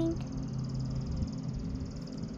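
A steady, high-pitched, rapidly pulsing insect chorus over a low steady hum.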